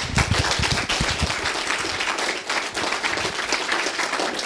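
Audience applauding: many people clapping steadily together.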